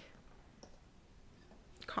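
A short pause in a conversation: faint room tone with one small click about half a second in, then a woman's voice resumes near the end.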